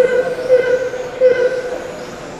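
A steady, mid-pitched horn-like tone that cuts in suddenly and swells loud three times in quick succession, over the background noise of the race hall.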